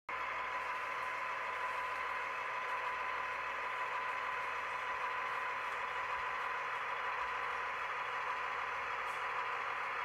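Model train running along the track: a steady mechanical whir of wheels and locomotive motor, with a faint even whine.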